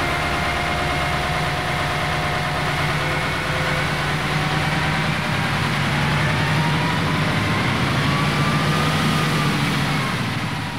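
Heavy military truck engine running steadily at idle, a continuous low drone. A faint whine rises slowly in the second half and falls back near the end.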